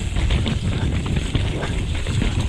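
Santa Cruz Megatower mountain bike descending dirt singletrack at speed: tyres rolling over the trail with a constant run of small knocks and rattles from the bike over bumps, under heavy wind rumble on the GoPro's microphone.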